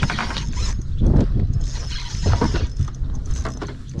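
A fishing reel being cranked in quick bursts of clicking and rasping gear noise while a hooked fish is reeled in. Heavy wind rumble on the microphone runs underneath.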